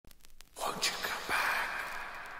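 Breathy, whisper-like voice sample opening an electronic dance track. It swells in about half a second in after a few faint clicks, and a sharp hit near the middle leads into a sustained hissy tone.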